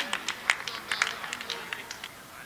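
Scattered hand claps from a few people, irregular and sharp, thinning out toward the end: applause for a goal.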